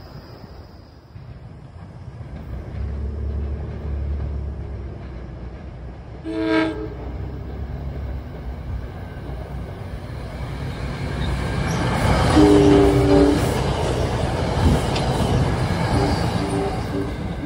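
NJ Transit commuter train approaching and passing, sounding its horn: a short toot about six seconds in, then a stronger two-note blast lasting about a second around twelve seconds. The rumble of the train on the rails builds as it comes alongside.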